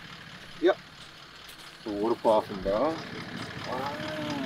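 Excited men's voices exclaiming over a steady low hum from a vehicle's engine idling.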